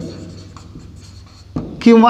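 Marker pen writing on a whiteboard: faint scratching strokes as the units are written out. A man's voice starts near the end.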